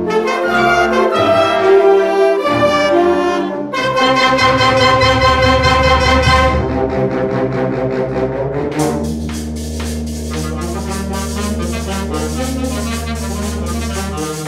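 School wind band playing a piece, brass to the fore over flutes and clarinets. About nine seconds in it drops to a softer passage over a held low bass note from the sousaphones.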